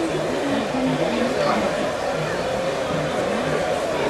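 Indistinct background chatter of several voices overlapping, with no clear words; any sound of the cards being handled is lost beneath it.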